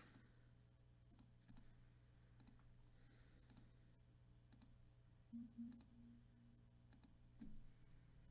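Faint computer mouse clicks, about one a second, each a quick press-and-release pair, over a steady low electrical hum.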